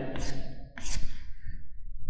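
A man's breathing between phrases: two audible breaths a little under a second apart, over a faint steady low hum.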